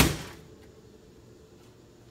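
Jeep YJ driver's door slammed shut once at the very start, a single loud bang that rings out for under half a second. The door is a tight fit and has to be slammed to latch.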